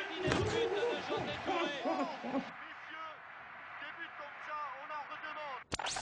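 Football match sound from a television: a commentator and shouting stadium crowd, many voices rising and falling in pitch. It cuts off suddenly near the end, followed by a short burst of noise.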